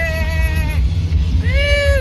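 A voice singing long held high notes, one ending under a second in and another rising in, held, and falling away near the end, over a heavy low rumble.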